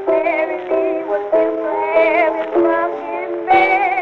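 A 1920s blues record: a woman singing phrases with a wide vibrato over held accompaniment chords. The sound is thin, with no highs, as on an old acoustic-era disc.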